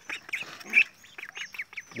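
Birds calling: a quick run of short, high calls, with one louder call a little before the middle.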